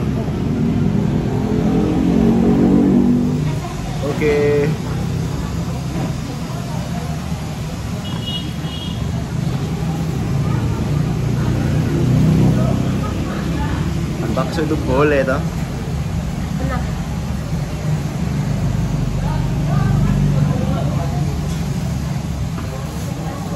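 Busy background of voices over a steady low rumble of road traffic, with two short high beeps about four and eight seconds in.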